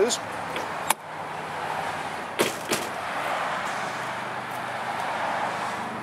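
Outdoor road-traffic noise: a steady hiss of passing cars that swells a little in the middle. Sharp clicks come about a second in and twice more near two and a half seconds.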